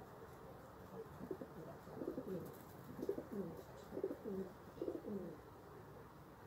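Valencian pouter pigeon cooing: a run of repeated coos, each falling in pitch, about one a second, starting about a second in.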